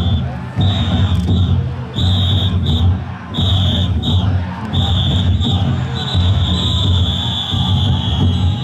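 Large taiko drums beating inside a row of Niihama taikodai drum floats, under the voices of the bearers and crowd. A shrill whistle-like tone sounds in short blasts, then is held long from about six seconds in.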